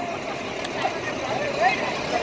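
A heavy diesel vehicle engine running steadily, with scattered men's voices from a roadside crowd over it.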